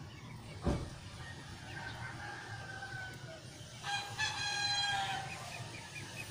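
A rooster crowing: one long call about four seconds in, the loudest sound here, after a fainter, more distant crow around two seconds in. A brief low thump comes near the start.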